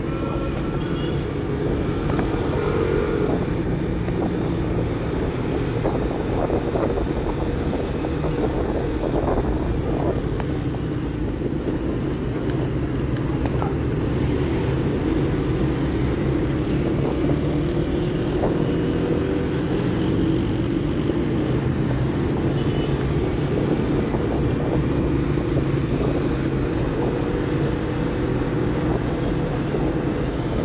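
A motorcycle engine running at low road speed in slow city traffic, heard from the rider's seat, its note drifting slightly up and down with the throttle over a steady rumble of surrounding traffic.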